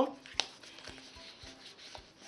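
Paper tags and card stock rubbing and sliding against each other as they are handled and slipped into a paper pocket on an album page, with one sharp tap about half a second in.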